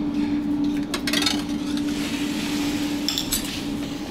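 Crockery and a metal ladle clinking at a canteen serving counter as soup is served into bowls and set on a tray. A few sharp clinks sound about a second in and again near the end, over a steady low hum.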